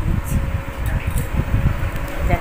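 Steady rumbling air noise from a room fan blowing across the microphone.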